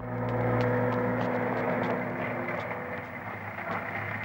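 A motor vehicle's engine running steadily, cutting in suddenly after silence, with faint light clicks scattered through it.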